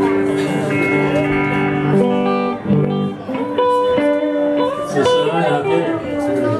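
Live band playing: electric guitars over bass and drums, with a lead guitar holding long notes and bending up through short runs.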